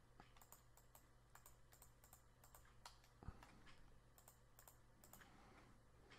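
Faint, irregular clicks of a computer keyboard and mouse, with a soft thump about three seconds in, over a low steady hum.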